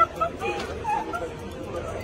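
People's voices on a busy street, with a few short, high yelping cries in the first second or so.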